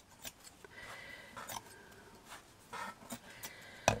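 Heavy dressmaking scissors snipping through fabric trimmings, a series of soft, separate cuts about every half second.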